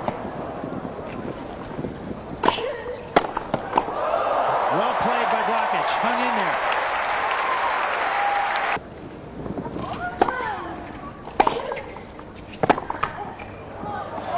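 Tennis ball struck by rackets a few times, then a crowd applauding and cheering for about five seconds, with a few shouts in it, cut off abruptly. More sharp racket strikes on the ball follow.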